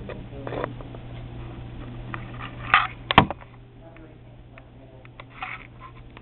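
Handheld camera being handled indoors: scattered clicks and two sharp knocks about three seconds in, over a steady low room hum.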